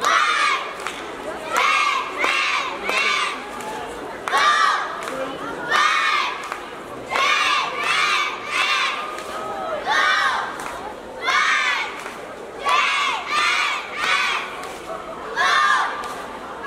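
A cheerleading squad shouting a cheer chant in unison: loud short shouted phrases, one every one to two seconds, with one longer held shout about halfway through.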